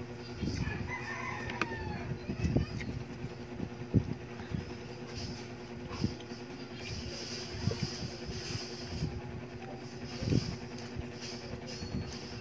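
Close eating sounds at a plate of fried tilapia and rice: scattered knocks and clicks of a spoon and fingers on the plate, over a steady low hum. A call that glides in pitch sounds in the background in the first two seconds.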